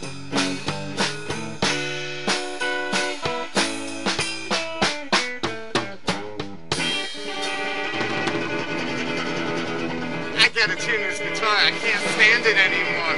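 Electric or acoustic guitar picked in a quick run of plucked notes and chords, then left ringing from about seven seconds in; a guitar the player calls out of tune. Voices come in near the end.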